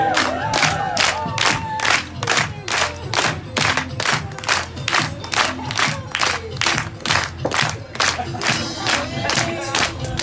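Audience clapping in unison to a fast, steady beat, with whoops and cheers near the start and again near the end, over Bollywood dance music.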